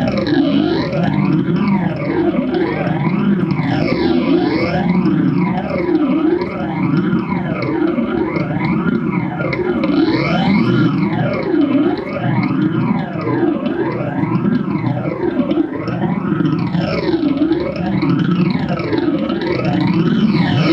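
Live experimental electronic music: a distorted, noisy drone run through effects, with its tones sweeping up and down in pitch over and over, each sweep taking a second or two.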